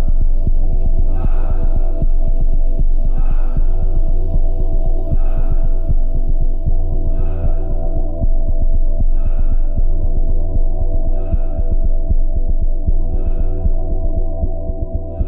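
Dark ambient electronic music: a loud, steady low drone with a fast throbbing flutter. A soft hissing swell rises above it about every two seconds.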